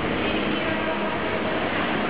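Steady rumble and hiss echoing in an underground parking garage, with a car's engine running as it rolls slowly past.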